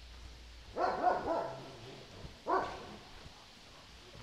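Dog barking: a quick run of about three barks about a second in, then a single bark a second later.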